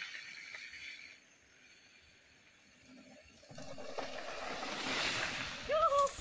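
Mountain bike tyres rolling over a dirt trail: faint at first, dropping almost to silence for a couple of seconds, then swelling from about three and a half seconds in as riders come down the trail. A short rising shout near the end.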